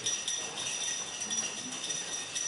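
A handbell rung over and over, a steady high ringing with quick repeated strikes.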